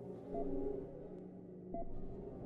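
Quiet, low sustained suspense drone from a thriller film score, with a short soft ping twice, about a second and a half apart.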